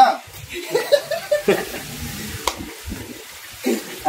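Handling noise from a small clip-on wireless microphone being fiddled with at the chest: soft rustling with two sharp clicks about a second apart, under faint murmured voices.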